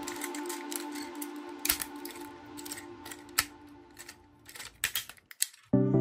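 Sharp plastic clicks and snaps as the parts of an Iron Knights Raiden transforming toy robot are turned and pressed into place, over background music that fades out. A louder music track starts near the end.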